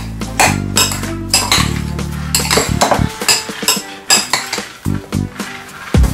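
A spoon clinking and scraping irregularly against a ceramic bowl while stirring diced ripe plantain with salt. Background music plays under it and fades out about halfway through.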